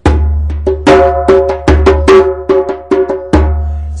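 Turkish-style goblet drum (darbuka) played by hand in a rhythm: three deep, resonant bass strokes, at the start, near the middle and near the end, with quicker sharp strokes between them.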